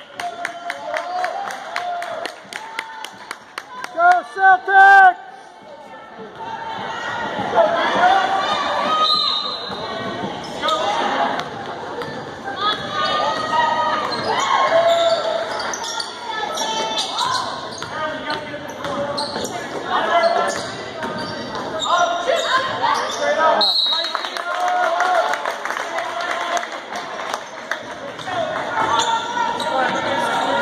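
Basketball dribbled on a hardwood gym floor, its bounces echoing in the hall, over the voices of players and spectators. A loud horn note sounds for about a second about four seconds in.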